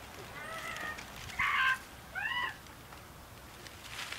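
Children in the background making animal noises: three short, high, pitched cries in the first half, the middle one loudest and the last one rising and then falling.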